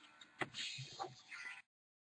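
Faint handling noise of trading cards being moved, with two light clicks. The sound then cuts out to dead silence.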